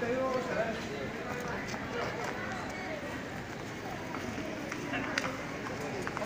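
Indistinct voices of people talking in an open street crowd, with a few short sharp clicks near the end.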